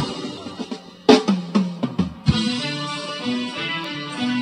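Live reggae band music: the playing dies down, a few drum hits come in about a second in, then guitar and bass settle into held notes.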